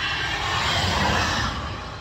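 A vehicle passing on the motorway: its tyre and engine noise swells to a peak about a second in, then fades away.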